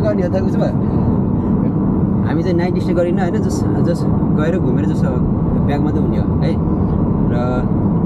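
Steady low rumble of road and engine noise inside a moving car's cabin, with people talking over it.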